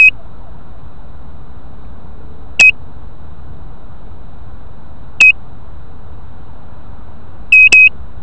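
Short, high electronic beeps: one about every two and a half seconds, then a quick double beep near the end, over a steady hiss.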